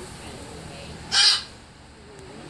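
A single loud, harsh bird call, a caw-like squawk lasting about a third of a second, a little past a second in, over faint outdoor background.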